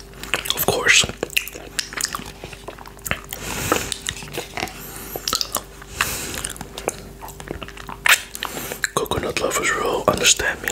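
Close-miked wet mouth sounds of coconut yogurt being licked and sucked off a finger: a run of lip smacks and sharp wet clicks, with a couple of longer sucking slurps in the middle.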